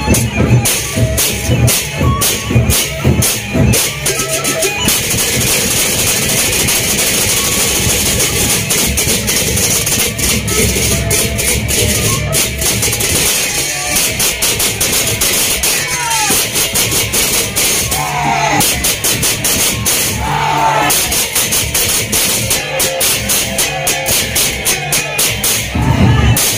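Gendang beleq ensemble playing: fast, dense clashing of hand cymbals over big drums and gongs, loud and continuous.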